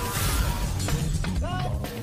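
A shattering crash, like a pane of glass or ice breaking, in the first half-second, over a music track.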